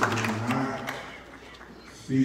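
A man's voice in a large hall, trailing off about a second in and leaving quiet room sound.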